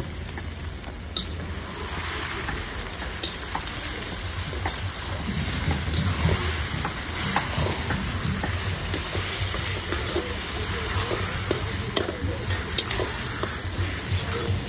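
Mashed roasted eggplant frying in oil in a large metal kadhai, sizzling steadily while a metal spatula stirs and mashes it, with scattered clicks and scrapes against the pan.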